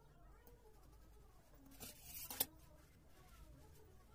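A plastic stencil being shifted over a sheet of card: a brief rustling scrape that ends in a sharp click about two and a half seconds in, with faint room sound around it.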